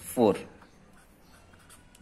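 Felt-tip pen writing on paper over a clipboard, with faint scratching strokes after a short spoken syllable at the start.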